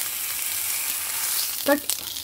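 Slice of coppa sizzling in hot fat in a nonstick frying pan, a steady high hiss. A short click comes near the end as it is turned.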